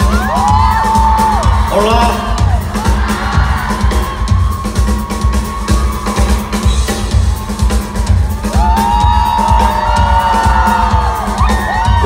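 A live band plays a steady drum-and-bass groove, with a concert audience screaming and cheering over it in high, rising-and-falling cries.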